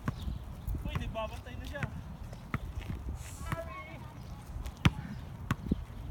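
Basketball bouncing on a paved outdoor court in irregular dribbles, with the loudest bounce about five seconds in.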